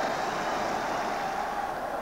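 A large football crowd cheering as one steady, even noise, just after the home side has scored a penalty.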